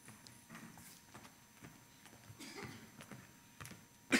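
Near silence in the hall, with faint scattered taps of footsteps on the stage as a speaker walks up to the lectern.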